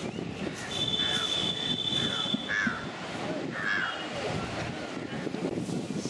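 Crows cawing several times over a steady outdoor background of wind and distant voices, with a steady high-pitched tone for about two seconds early on.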